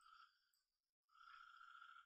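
Near silence: faint steady room tone with a thin background hum.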